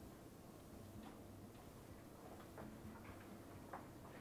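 Hair-cutting scissors snipping hair: faint, irregular sharp clicks, several in a few seconds, over a low steady hum.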